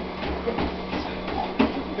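Electric home treadmill running fast: a steady low motor and belt hum with irregular thuds of feet landing on the moving belt.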